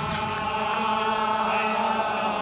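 Chant-like singing: a sustained vocal note held steadily over a low drone, without the breaks of speech.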